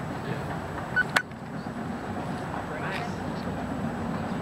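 Steady outdoor background noise with faint distant voices, and a single sharp click about a second in.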